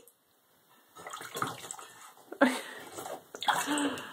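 Bathwater splashing and sloshing as an otter thrashes and dives with a rubber duck, starting about a second in, with louder splashes about halfway and near the end.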